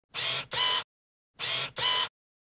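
Single-lens reflex camera shutter firing twice, each shot a quick two-part clack, with the shots just under a second and a half apart.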